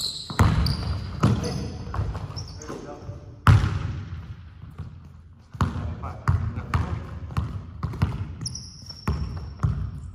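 Basketball dribbled on a hardwood gym floor in a large echoing hall, the bounces coming at an irregular pace with a hard one about three and a half seconds in. Sneakers squeak briefly on the floor near the start and again about eight and a half seconds in.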